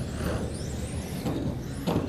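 Several electric RC touring cars racing on a carpet track, their motors whining in overlapping high pitches that rise and fall as they accelerate and brake. A short knock comes just before the end.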